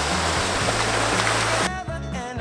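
Shallow stream rushing over stones, with steady background music underneath. Near the end the water sound cuts off abruptly and a wavering, high-pitched sound begins.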